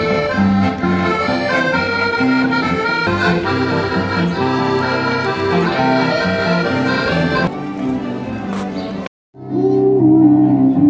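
A street duo, accordion and electric guitar, playing a tune together; the music cuts off abruptly about nine seconds in. A woman's singing with keyboard begins just before the end.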